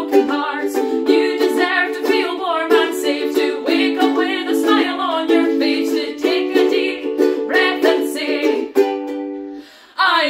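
Two women singing together while strumming two ukuleles in a steady rhythm. Near the end the singing and strumming drop away for a moment before the next line.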